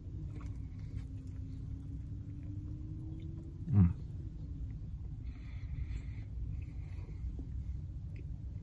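A person biting into and chewing a fried-chicken biscuit sandwich with mouth closed, with one short appreciative 'mm' about four seconds in, over a steady low rumble.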